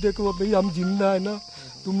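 A man talking, with a steady high-pitched shrill of insects behind his voice.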